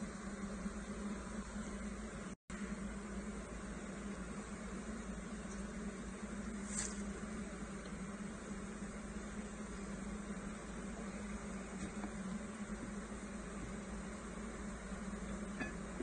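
Steady hum of a large honeybee colony buzzing around open, bee-covered frames, cutting out for an instant a couple of seconds in.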